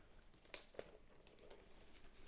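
Near silence: room tone, with a couple of faint clicks about half a second in as a laptop is handled.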